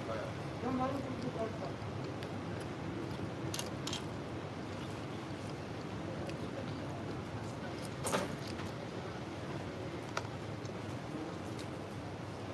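Restaurant background: a steady murmur with faint voices in the room, and a few short sharp clicks, the loudest one about eight seconds in.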